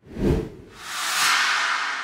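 Whoosh transition sound effect: a short low hit right at the start, then a noisy swoosh that swells to a peak a little past a second in and fades away.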